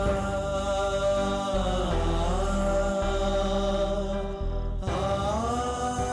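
Background music: a slow chant-like line of long held notes that glide to a new pitch a few times, over a steady low drone.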